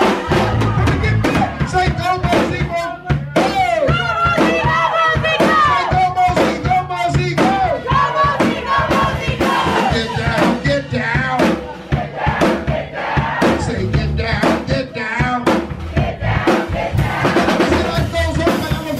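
A live rock band with a full drum kit playing loudly, with crowd voices mixed in.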